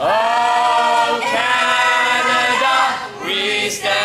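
Group of young men and women singing a national anthem together, in long held notes with a short breath just after three seconds in.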